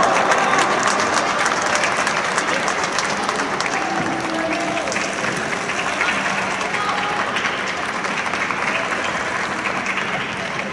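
Spectators clapping after a goal, with a few voices calling out. The applause is loudest at the start and slowly dies down.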